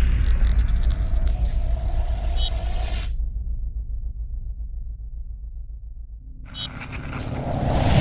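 Logo sting sound effect: a deep rumbling boom with crackling high sparkle that cuts off about three seconds in, leaving the low rumble to fade, then a swelling whoosh that grows louder towards the end.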